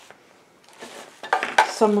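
Light handling noise on a work table: near silence at first, then a few soft clicks and knocks of small hardware being moved, with paper rustling as it is picked up.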